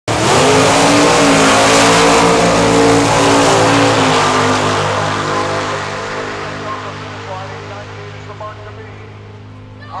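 Two drag-racing cars launching at full throttle, their engines very loud for the first few seconds and then fading steadily as they pull away down the strip on a pass of just under nine seconds.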